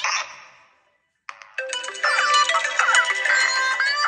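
Smartphone incoming-call ringtones playing a melody. The melody fades out within the first second, goes silent briefly, and starts again a little over a second in.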